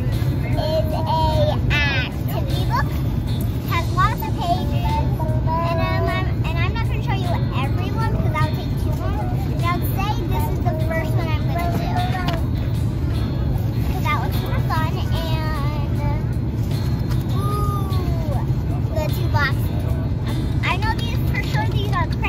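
A young girl's voice, talking on and off, over the steady low drone of an airliner cabin.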